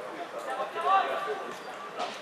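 Men's voices calling out across an open football pitch during play, loudest about a second in.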